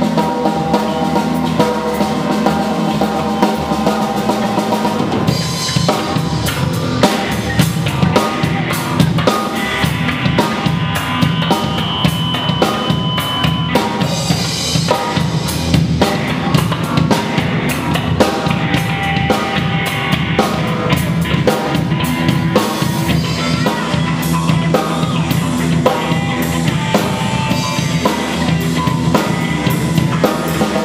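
Live rock band playing: a drum kit with bass drum and snare beating under electric guitars. The drums come in fully about five seconds in and keep a dense, steady beat.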